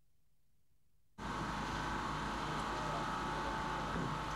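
Near silence, then about a second in an abrupt cut to steady engine noise with a constant high whine over a deep rumble.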